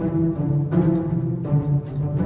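Spitfire Audio Originals Epic Strings sample library playing its pizzicato articulation from a keyboard: a few low plucked string notes in a row, a new one about every three quarters of a second.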